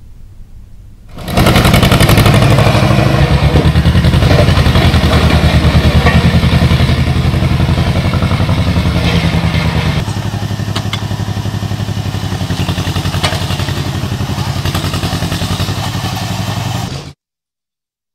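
A road roller's engine running loudly with a rapid, even pulse as the roller drives over heaps of glass liquor bottles. It starts about a second in, drops slightly in level partway through with a few sharp clinks, and cuts off suddenly near the end.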